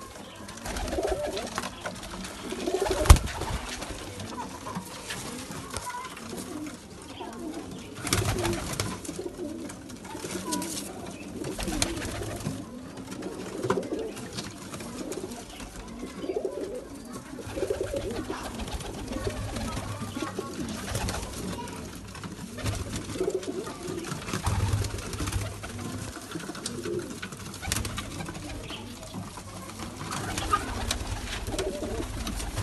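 A flock of domestic pigeons cooing in a small loft, low coos repeating throughout, with one sharp click about three seconds in.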